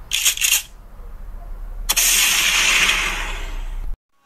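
Sound effects: a quick run of four or five sharp cracks, then a loud hissing noise from about two seconds in that cuts off suddenly near the end.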